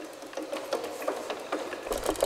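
Wooden gears and linkages of a hand-built wooden machine clicking and knocking in a quick, uneven run, several clicks a second.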